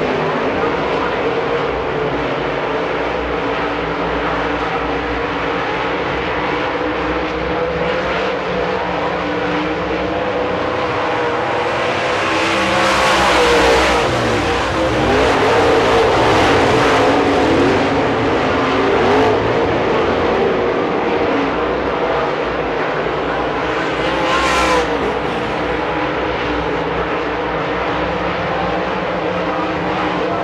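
Pack of dirt-track modified race cars' V8 engines running at racing speed, a continuous drone of several engines at once. About twelve seconds in the pack passes close and is loudest for several seconds, pitches sliding down as the cars go by, and another car passes close about twenty-four seconds in.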